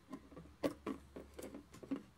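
Light clicks and taps as jumper-wire header pins are pushed into a plastic mini breadboard and the wires are handled: about half a dozen scattered ticks. A faint low hum runs underneath.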